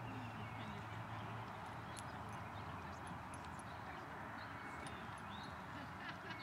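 Horse walking on arena sand: soft, faint hoofbeats and tack sounds over a steady background hiss.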